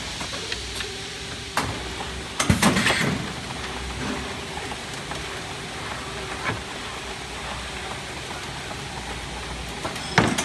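Paper-converting machine running, turning kraft paper into board strips: a steady mechanical noise with a faint hum. Sharp clatters of board and metal break in now and then, the loudest a rapid cluster about two and a half seconds in.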